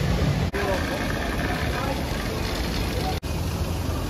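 Amusement park ambience: a steady broad rumble with indistinct voices. It breaks off in two very short dropouts, about half a second in and near the end.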